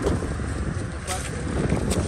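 Wind buffeting the microphone outdoors, a steady low rumble, with a few faint crisp clicks.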